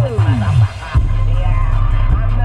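Hip hop track played loud through two cheap 12-inch car subwoofers driven by a 4000-watt Lanzar amplifier. A falling synth sweep dives down into the bass, the bass drops out briefly, then heavy bass comes back in about a second in.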